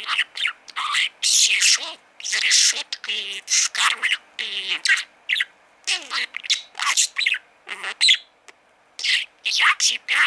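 Budgerigar chattering and warbling in a fast run of short, squeaky chirps and speech-like babble, with a brief pause about eight seconds in.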